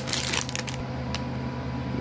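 Plastic packaging of string cheese crinkling and rustling as it is handled, for about the first half-second, then a single tick about a second in, over a steady low hum.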